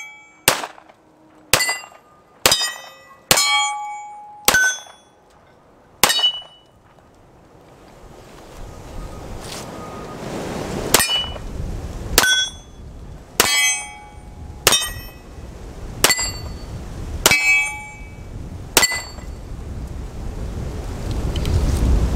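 A Para USA Expert 1911 firing .45 ACP single-handed, each shot followed by the ring of a steel target being hit. There are six shots in about six seconds, a pause of about five seconds, then seven more at roughly one a second.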